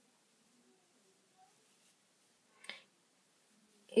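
Near silence, broken by a single short, sharp click a little past halfway.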